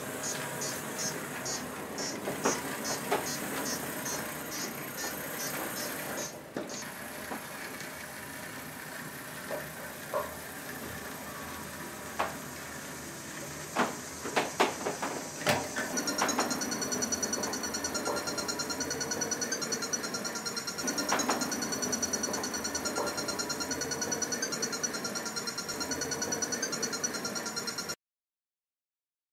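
Small electric drive motors of a Cubelets modular robot whirring, with a pulsing high whine early on. A cluster of sharp clicks and knocks comes about halfway, then a louder, steadier warbling whine.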